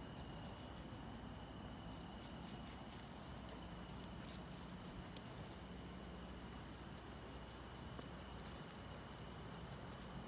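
Faint, scattered light crackles of footsteps in dry leaf litter as a red fox walks across the forest floor.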